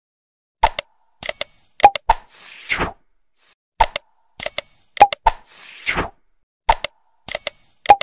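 Subscribe-button animation sound effect, played three times about three seconds apart: a couple of sharp clicks, a short bell-like ding, more clicks, then a soft whoosh.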